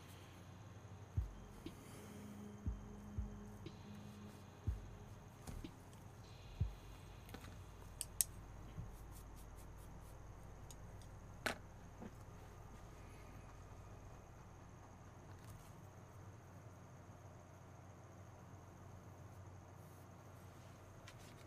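Quiet handling at an acrylic painting table: a brush dabbing on the painting board and tools being set down, heard as several soft low thumps in the first few seconds and a couple of sharp clicks around the middle, then only a faint steady hum.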